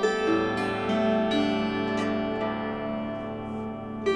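Plucked string instrument playing a slow lament melody. Notes are plucked over a low held bass note and ring on as they die away, growing quieter near the end.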